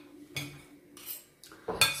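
Cutlery clinking and scraping against bowls while noodles are eaten: a few short, separate clinks.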